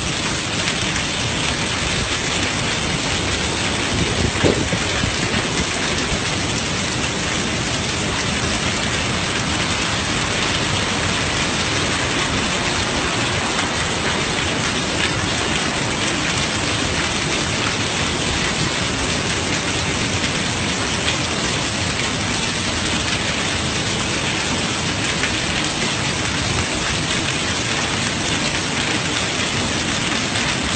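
Heavy rain pouring steadily onto a flooded street, a dense, even hiss of falling water, with one brief louder knock about four seconds in.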